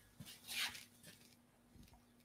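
Faint handling noises: a soft knock, a short scuffing rustle about half a second in, then a couple of small taps, over a faint steady hum.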